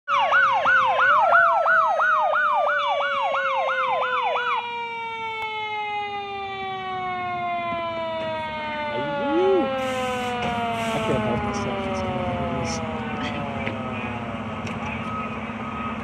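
Emergency vehicle sirens on arrival. A fast warbling yelp siren cycles for about four and a half seconds and cuts off, while a second siren tone slides slowly down in pitch as it winds down over the next ten seconds. A low steady engine hum runs underneath.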